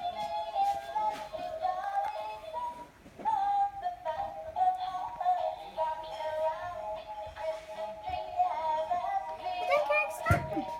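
Animated Christmas village display playing an electronic Christmas melody, one simple tune line played note by note.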